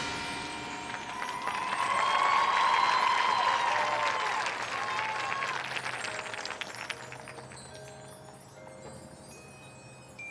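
A loud marching-band chord dies away. Cheering and applause from the crowd swell up and fade over the next few seconds. Near the end, the front ensemble's chimes and mallet percussion ring soft, held notes.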